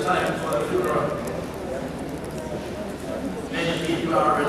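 A man preaching over a microphone in a large hall, his speech pausing briefly in the middle.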